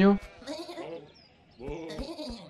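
Cartoon sheep bleating with a wavering voice: one bleat about half a second in, then another after a short pause near the end.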